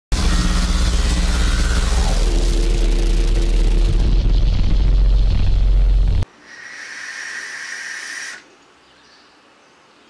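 Sound effects of an animated logo intro: a loud, dense rumble with a falling pitch sweep, cutting off suddenly after about six seconds, then a quieter hiss for about two seconds.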